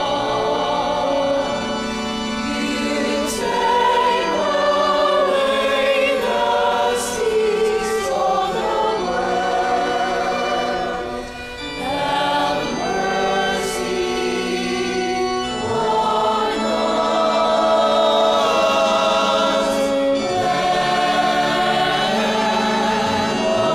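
Choir singing a hymn, with several voices holding and changing sustained notes.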